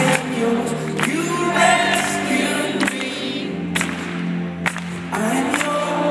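Live pop band performing in an arena, with voices singing over a full band and a steady drum beat, heard from within the audience.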